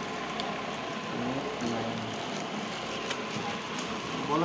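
Plastic packaging crinkling and rustling as bundles of plastic-wrapped phone back covers are handled and sorted, with a few small clicks.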